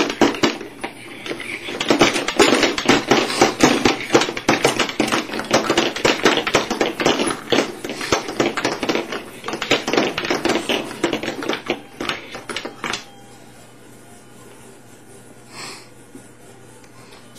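Segmented BEAM lamprey robot thrashing on a tabletop: a fast, dense clatter of clicks and taps from its coupled sections, stopping suddenly about 13 seconds in.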